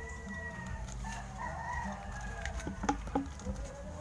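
A rooster crowing, one long drawn-out call over the first second and a half. Near the end come a few light clicks, as folded paper slips are tipped from a plastic bag into a plastic cup.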